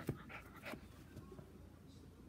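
A small Corgi-Chihuahua mix dog breathing in a few short, quick puffs, after a sharp knock right at the start.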